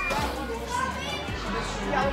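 Background voices of children and adults talking and calling out, with some music underneath.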